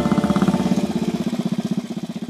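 Royal Enfield single-cylinder motorcycle engine running at low speed, a steady beat of about a dozen thumps a second that eases slightly after the first second.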